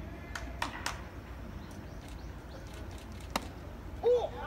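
Outdoor ballpark background: a steady low rumble with a few scattered sharp clicks, one louder click a little past three seconds in.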